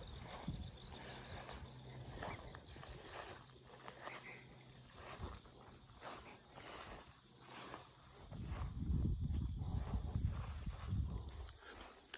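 Cattle lowing in a low, rumbling voice for about three seconds near the end, the loudest sound here. Under it, quiet footsteps through dry grass and faint insects chirping.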